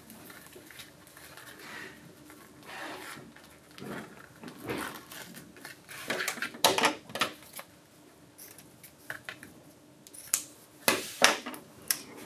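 Soft rustling of satin ribbon and card as a ribbon bow is tied and adjusted by hand, with a few sharp taps and clicks against the cutting mat, the loudest a pair near the end.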